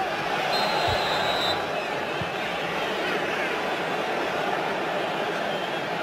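Steady crowd noise from a football stadium, a continuous murmur of spectators during play, with a brief high steady tone about half a second in.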